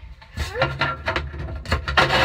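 A hidden phone being grabbed and handled, with close knocks and rubbing on the microphone starting about half a second in, and a child's voice mixed in.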